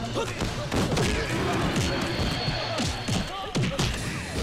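Film fight-scene soundtrack: men shouting and grunting in a scuffle, with several sharp punch and thump impacts over background music.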